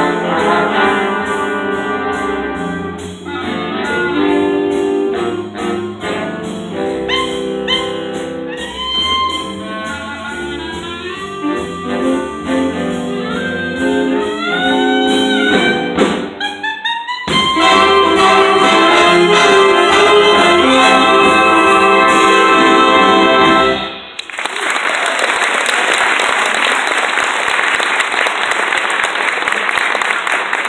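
Big band of saxophones, trumpets and trombones playing a jazz number. It finishes on a long held chord that cuts off suddenly about 24 seconds in, followed by audience applause.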